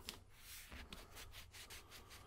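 Faint rubbing and rustling as gloved hands peel tape from shade fabric rolled on a roller tube, with a few brief scratchy strokes in the middle.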